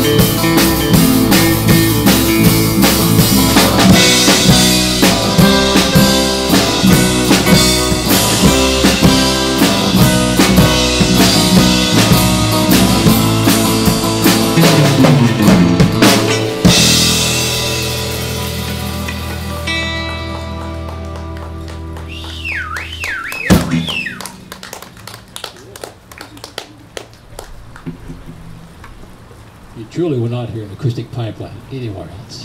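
Live band of acoustic guitars and a drum kit playing a song with a steady beat, which ends about halfway through on a held chord that slowly fades. A single sharp hit comes near the end of the ringing chord, followed by quieter scattered clapping.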